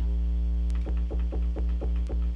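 Cherry Audio Minimode (Minimoog Model D emulation) software synthesizer holding a low, buzzy note with oscillator 3 modulating it. About a second in, the tone starts pulsing about four times a second as the modulation slows to an LFO-like rate.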